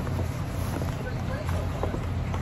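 A steady low hum with faint rustling and a few small clicks as a shopping bag is rummaged through.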